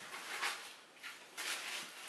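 Faint rustling and scuffing of a model railway coach's cardboard box and plastic tray being handled, in a few soft swells.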